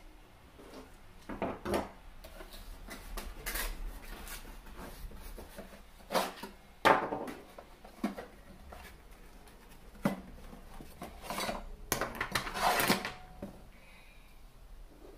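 Scattered knocks and clatters of kitchen tools being handled on a wooden cutting board: a kitchen knife set down and a stainless pineapple corer-slicer taken from its box and placed on the pineapple. One sharp knock about seven seconds in is the loudest, with a busier run of clattering near the end.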